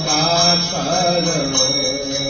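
Devotional chanting with music: a voice sings a slow, drawn-out melodic line over a held low note.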